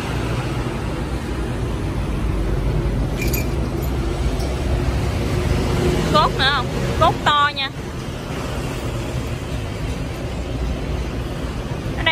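Electric motor of a Kitagawa bench drill press running with a steady low hum, smooth and quiet. A few brief high voice sounds come in about halfway through.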